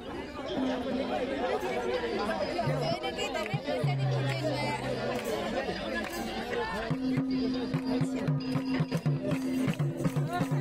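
Crowd chatter and talk, then about seven seconds in, music starts up with madal hand drums beating.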